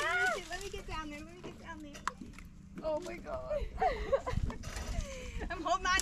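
Women's voices exclaiming and laughing without clear words while a bass is being landed, over a faint steady hum. A low rumble comes in about four seconds in.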